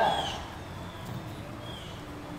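A voice briefly at the start, then low open-air background with two faint short high chirps about a second and a half apart.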